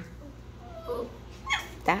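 Seven-week-old puppies whimpering faintly: a few short, soft, wavering whines in the middle, over a steady low hum.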